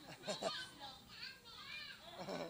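Children's voices: several high-pitched calls and shouts overlapping, loudest about half a second in.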